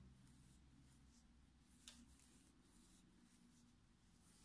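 Near silence: faint room tone with a low hum and a single faint tick about two seconds in.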